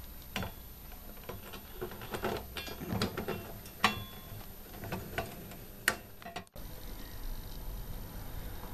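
Metal face-plate of a Vestax PMC-03A DJ mixer being fitted back over the fader and knob shafts by hand: light metallic clicks, taps and scrapes, the two sharpest just before four seconds and about six seconds in, the first with a brief ring.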